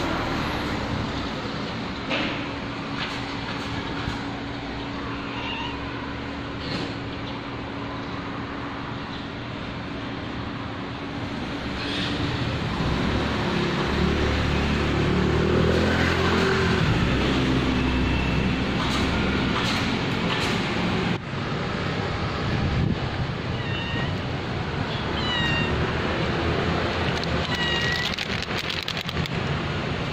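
A domestic cat giving several short, high-pitched meows in the second half, over steady street background noise, with a louder low rumble through the middle.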